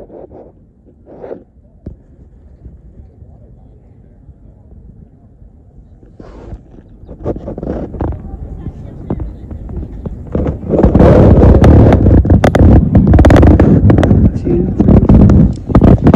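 Wind buffeting the phone's microphone, gusting in from about six seconds in and very loud and rough from about halfway on.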